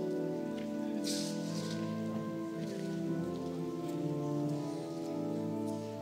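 Church pipe organ playing slow, sustained chords, with a brief rustle about a second in.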